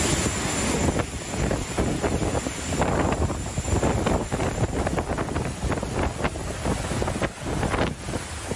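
Hurricane-force wind gusting and buffeting the microphone in surges, with driving rain.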